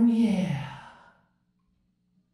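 A man's voice holding the song's last note with a slight waver, then sliding down in pitch and fading out about a second in.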